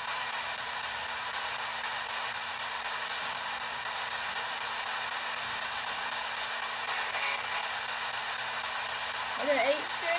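P-SB7 spirit box sweeping the radio band, giving a steady rush of static. A brief voice-like fragment comes through near the end.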